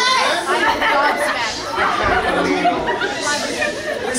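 Several people talking at once: indistinct overlapping chatter.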